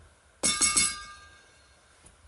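A quick run of three or four sharp clinks about half a second in, with a brief ringing that fades within a second.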